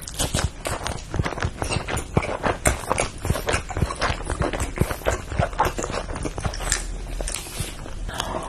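Close-miked chewing of a crunchy, breaded deep-fried miso kushikatsu skewer: many rapid, irregular crunches.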